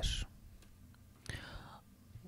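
The end of a spoken word, then a pause with a faint breathy, whisper-like vocal sound about a second and a half in.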